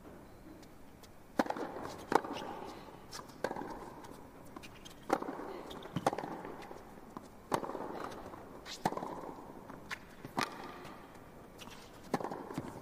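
Tennis rally: rackets strike the ball back and forth, a sharp hit roughly every second to second and a half, with quieter clicks from bounces and footwork between.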